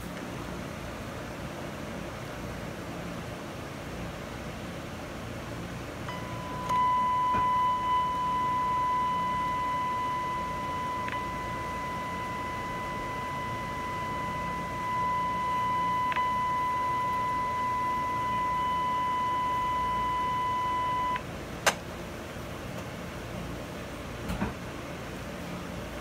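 A steady, high-pitched audio test tone modulating a radio transmitter, shown as an envelope on a Heathkit SB-610 monitor scope. It starts about six seconds in, holds for about fifteen seconds, then stops suddenly. A sharp click follows just after, and a smaller knock comes near the end.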